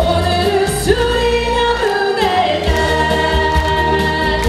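Live Korean pop song: a female singer holds long, gliding sung notes over a backing track with a steady bass.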